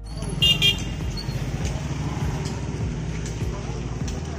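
Busy street traffic with engines running and people talking; a vehicle horn toots twice in quick succession about half a second in.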